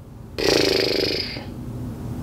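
A single short wordless vocal sound from a woman, about a second long, starting suddenly just under half a second in and fading away.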